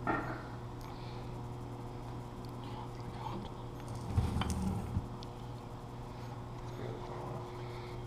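Heavy Toyota Prius motor-generator stator lifted and shifted across a wooden workbench, giving a cluster of low knocks and scraping about four seconds in, over a steady low electrical hum.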